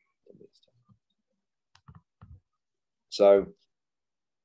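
A pause in a two-way voice conversation: mostly near silence with a few faint short clicks and murmurs, then a voice says "So" near the end.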